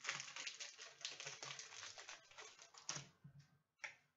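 A foil trading-card pack being torn open and its wrapper crinkled: a dense run of fine crackles lasting about three and a half seconds, then one short sharp crackle near the end.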